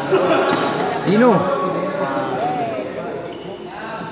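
Voices echoing in a badminton hall between rallies: people talking, with one voice calling out in a rising-then-falling exclamation about a second in and a shorter call soon after. A few light thuds sound under the voices.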